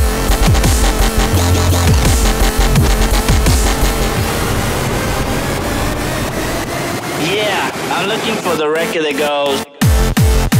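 Happy hardcore dance track with a driving kick drum and bass. About seven seconds in the kick and bass drop out into a breakdown with a warbling, pitch-bending vocal sample. After a brief dip near the end, the kick slams back in.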